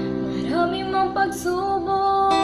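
A song played over the picture: a woman singing with guitar accompaniment. The voice comes in about half a second in over sustained guitar notes.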